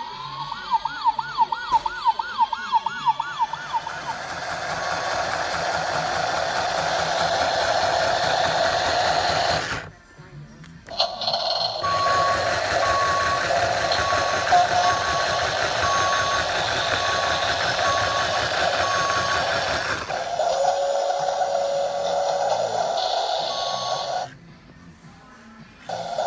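Electronic sound effects from Teamsterz Mighty Movers toy vehicles: a fast warbling siren from the toy police car, then a steady engine-like noise. After a short break, the toy JCB wheel loader's engine noise plays with repeated reversing beeps over it.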